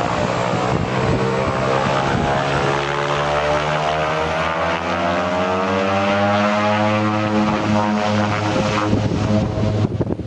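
De Havilland Canada DHC-6 Twin Otter's twin turboprop engines and propellers running loud as the aircraft moves off, the propeller tone rising in pitch through the middle and then holding steady as power comes up.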